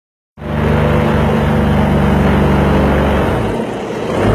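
A motor vehicle's engine running at a steady speed, easing off shortly before the end.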